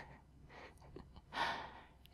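A speaker's soft breath drawn in about one and a half seconds in, ahead of speaking again, with a few faint clicks before it.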